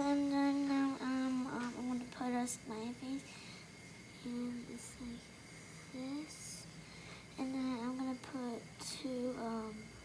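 A child humming a wordless tune in short phrases with held, sliding notes, pausing for a few seconds in the middle.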